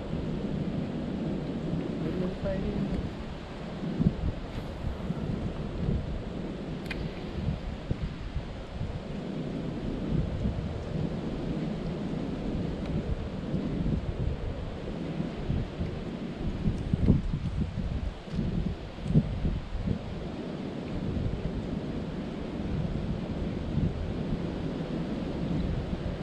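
Wind buffeting an action camera's microphone: a low, steady rumble with irregular louder gusts.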